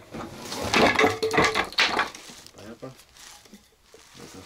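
Wooden boards and offcuts knocking and clattering together as they are handled and sorted, a cluster of sharp knocks in the first two seconds, with short, indistinct voices.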